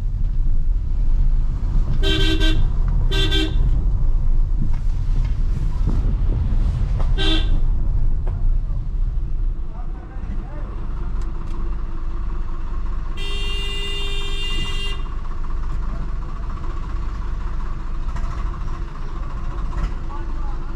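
Car horn tooting: two short toots a second apart, a third a few seconds later, and then a longer blast of about two seconds midway. Under it runs the low rumble of the Maruti Suzuki Ciaz creeping along a rough lane, heard from inside the cabin.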